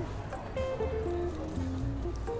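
Background music: a slow falling line of single notes over a steady low bass.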